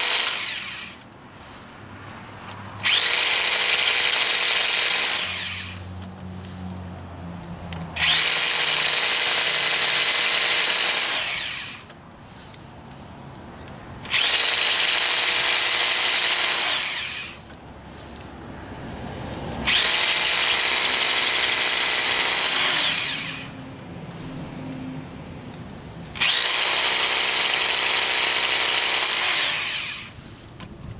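Electric drill with a carbide-tipped bit boring into very hard quartz in short bursts of about three seconds, five times over. The motor starts sharply and winds down at the end of each burst, with pauses between in which the bit is cooled in water to keep it from overheating.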